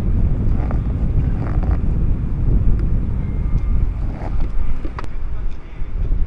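Outdoor wind buffeting the microphone, a loud, uneven low rumble, with a single sharp click about five seconds in.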